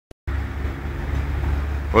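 A steady low hum, strongest in the deep bass, which starts just after a short click at the very beginning.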